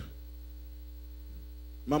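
Steady low electrical mains hum from a live stage sound system, holding at an even level.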